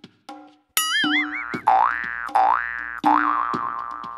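Cartoon-style comedy sound effects over a music track: a wobbly "boing" about a second in, then a few swooping pitch glides down and back up, all over a steady percussion beat.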